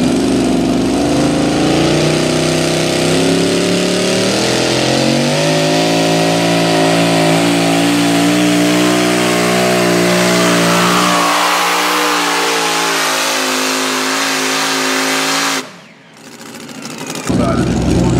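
Pro modified pulling tractor's supercharged engine at full throttle under the load of the sled, its pitch climbing in steps over the first several seconds and then holding high. The sound cuts off suddenly about two seconds before the end.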